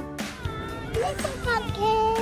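Young children's high-pitched voices calling out over the open field, with rising and falling cries and one longer drawn-out call near the end.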